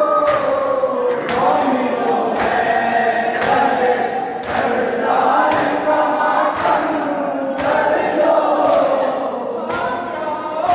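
A crowd of men chanting a nauha (Shia mourning lament) together, with a loud unison slap of hands striking chests (matam) about once a second, keeping the beat of the chant.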